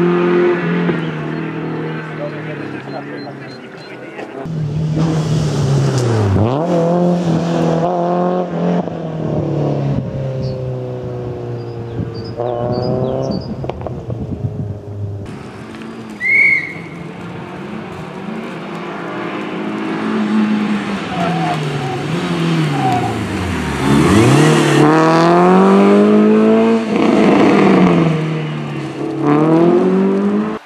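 Renault Clio Sport rally car's four-cylinder engine revving hard, its pitch repeatedly climbing through the gears and dropping as it lifts and brakes for corners. Heard over several passes of the car.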